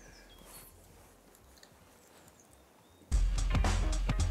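A faint, almost quiet background for about three seconds, then background music with deep bass starts suddenly and plays on loudly.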